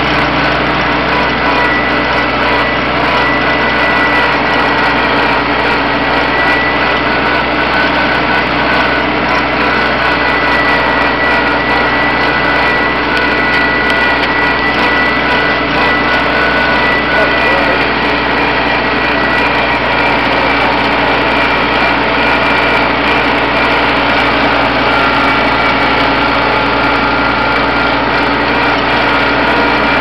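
1956 Farmall Cub's four-cylinder flathead engine running steadily while the tractor is driven, heard close up from the driver's seat.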